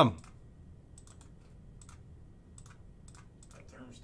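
Computer keyboard and mouse clicks, a dozen or so light, irregularly spaced clicks, as a list of names is copied and pasted into a spreadsheet.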